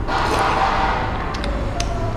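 A person eating soup from a metal spoon, with a few light spoon clicks in the second half over a steady background hum.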